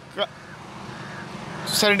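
A motorcycle engine drawing nearer on the road, growing steadily louder, with a short spoken syllable near the start and speech again near the end.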